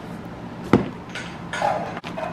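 A single sharp knock as a cardboard grocery box is set down on a countertop, followed by faint rustling of handled plastic food packaging.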